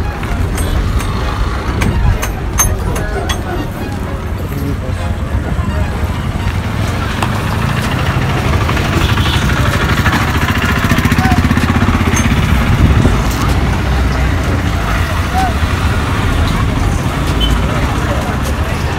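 Busy bus-station street ambience: motor vehicle engines rumbling close by, mixed with the chatter of a crowd. A few sharp clicks come in the first few seconds.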